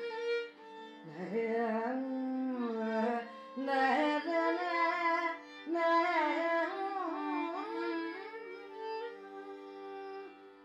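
Carnatic classical music in raga Kharaharapriya: an ornamented melodic line of gliding, bending phrases with short breaks, over a steady drone.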